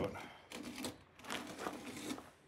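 Faint, irregular clicks and clatter of tools and parts being handled inside the back of a van.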